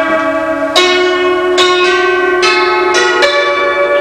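Hammered dulcimer playing a slow melody: single notes struck a little more than once a second, each left ringing with a bright, bell-like tone.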